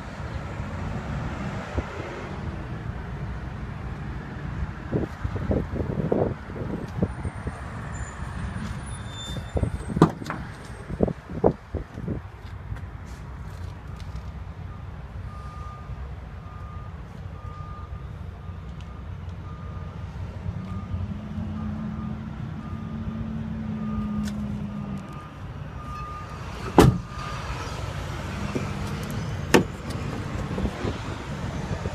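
Warning chime in a truck cab, a short beep repeating about one and a half times a second, which runs for about twelve seconds and stops as a door slams shut. Before it come several knocks and thumps, and a steady low rumble runs underneath.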